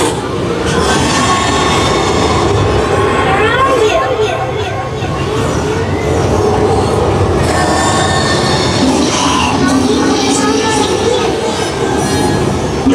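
Loud, continuous rumbling sound effects, with voices mixed in and a few gliding, shrieking tones about three to four seconds in.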